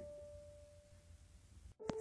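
Faint background music: a single held tone that fades away over the first second and a half. A sharp click comes near the end.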